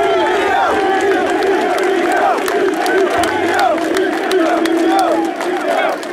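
Rally crowd of many voices cheering and shouting in approval, at a steady loud level throughout.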